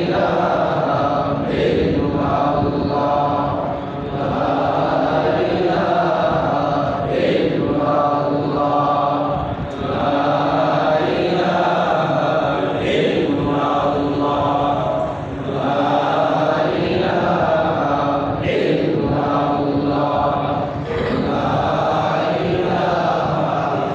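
Men's voices chanting a devotional phrase in a steady rhythm, the phrase repeating about every five to six seconds.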